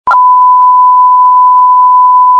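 Loud, steady test-tone beep of the kind played over television colour bars, cutting in abruptly and held at one unchanging pitch.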